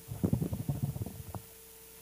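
Handling noise on a table microphone: a burst of irregular low rumbling bumps lasting about a second, ending in a single click, then only a faint steady hum.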